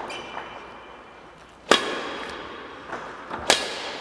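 Badminton racket strings striking a shuttlecock twice in light backhand taps, two sharp crisp hits about two seconds apart, each echoing briefly in a large sports hall.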